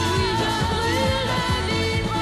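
1970s French pop song: a woman's lead vocal holding and gliding through sung notes over bass and a steady drum beat.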